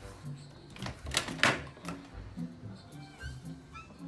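Background music with a repeating low bass pattern. About a second in, a brief loud clatter and rustle of plastic toys being dug through in a toy bin.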